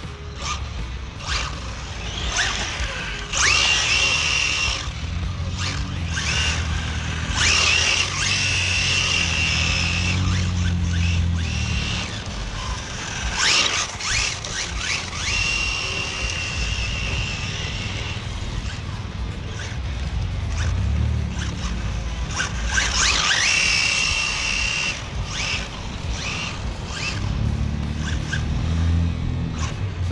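RC drift cars making repeated passes. Their motors whine and rise in pitch as they accelerate, with tyres sliding and scrubbing on asphalt.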